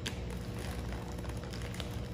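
Plastic fish-shipping bags being handled, crinkling with small sharp clicks, over a steady low hum.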